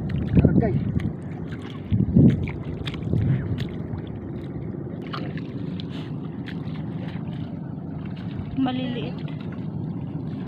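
Footsteps wading and splashing through shallow seawater on a tidal flat, loudest in three bursts in the first few seconds, over a steady low rumble of wind on the microphone. A short voice sounds near the end.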